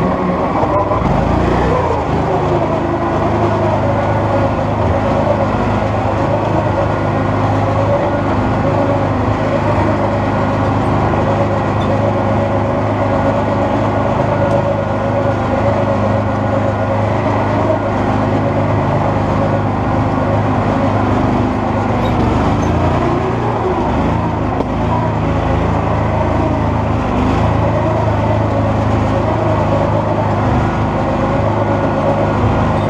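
Coot ATV engine running steadily as the machine crawls along at low speed, a constant drone with no breaks or changes in level.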